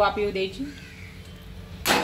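A metal spoon stirring a thick vegetable mash in a stainless steel pan, starting near the end with a quick run of loud scrapes and knocks against the pan's side.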